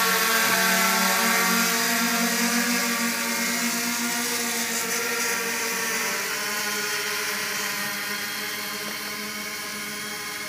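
Electric octocopter's eight motors and propellers whirring steadily in flight, a drone hum with several pitches layered together. It grows gradually fainter as the craft moves away.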